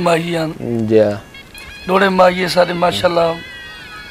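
A man speaking in two phrases, with a short pause between them.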